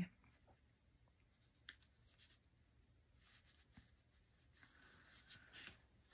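Near silence, with faint scratchy strokes of a paintbrush working paint onto textured paper, and a light tick a little under two seconds in.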